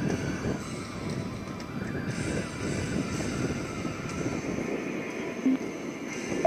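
Wind rushing over the microphone of a moving motorcycle, with the Honda H'ness CB350's single-cylinder engine running steadily underneath. A short tone sounds near the end.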